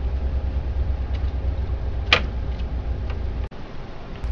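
Steady low hum with a few faint clicks and one sharper click about halfway, from the plastic transfer roller bearings and tabs of a laser printer being pried free by hand. The hum cuts out briefly near the end.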